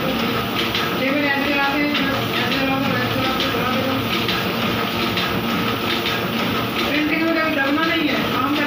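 Two-colour offset printing press running with a steady, repetitive mechanical clatter. An indistinct voice is heard over it at times.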